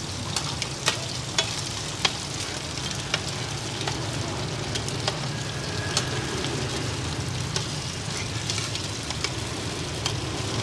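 Cubes of taro rice-flour cake and eggs sizzling in oil in a cast-iron pan. Metal spatulas scrape and clack against the pan every second or so, over a steady low hum.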